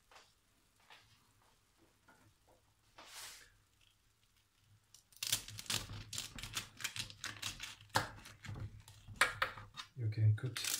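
Knife cutting through the crisp, freshly baked filo layers of a banitsa, a dense, rapid crackling that starts about halfway through and runs on.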